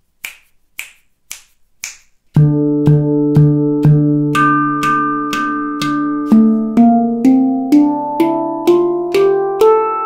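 Four finger snaps count in, then a Victor Levinson handpan is played with the left hand alone at about two strokes a second. It plays four low doom strokes on the central note, four higher tak strokes, then a melody rising up the scale note by note.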